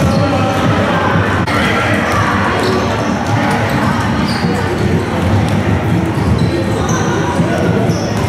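Basketballs bouncing on a hardwood gym floor among children's voices, which echo in a large sports hall.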